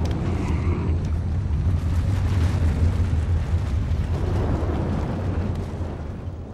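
Loud, deep earthquake rumble shaking a rock cave, as the cave begins to collapse; the rumble eases off near the end.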